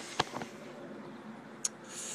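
Handling noise from a handheld camera being turned around: a sharp click just after the start and a thinner, higher click about a second and a half in, over faint steady background hiss.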